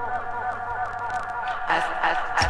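Dub reggae breakdown: a short, curling pitched fragment repeats rapidly through a tape-style echo and fades, over a held low bass tone. Near the end the band starts to come back in.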